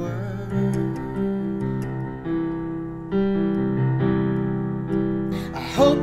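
Piano accompaniment of a slow ballad holding sustained chords, a new chord struck about every second. A male voice comes back in singing near the end.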